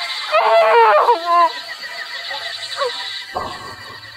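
A woman's gloating, villainous laugh in quick rising-and-falling peals, dying away after about a second and a half.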